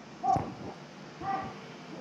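Two short, faint calls from human voices, about a second apart, typical of participants calling out their numbers in a shouted counting drill.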